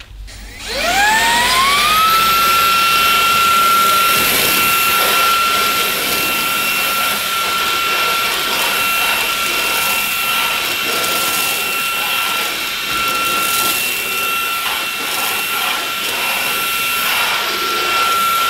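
Easine by ILIFE M50 cordless handheld vacuum cleaner switched on, its motor spinning up with a rising whine about a second in, then running steadily at a high pitch while its crevice tool sucks up rice and porridge oats from a worktop.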